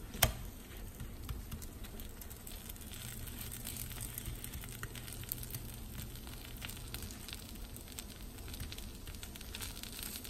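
A folded, filled dosa frying in a non-stick pan: a faint, steady sizzle with scattered small crackles. A single sharp knock comes just after the start.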